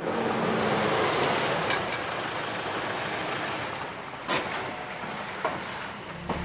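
Cars driving up on a road and slowing to a stop: steady tyre and engine noise that eases off. A sharp click comes about four seconds in, and a fainter one near the end.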